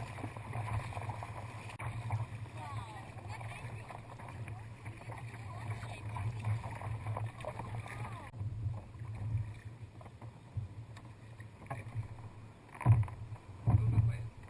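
Sea kayak being paddled through choppy water: water rushing and splashing against the hull over a steady low rumble, with the rushing quietening abruptly about eight seconds in. Two louder thumps come near the end.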